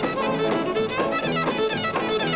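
Country fiddle playing a fast instrumental run, its bowed notes following one another in quick succession.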